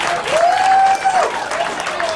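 Spectators applauding and cheering, with one voice holding a long shout from about a quarter second in to just past the first second.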